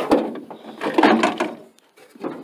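Knocks and clattering of cleaning gear being pulled out of a work van's door storage, a mop snagging and tangled as it comes out. There is a sharp knock at the start, a longer rattle about a second in, and then it stops.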